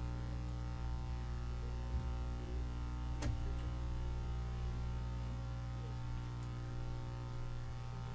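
Steady electrical mains hum and buzz through the sound system, with one sharp click a little over three seconds in.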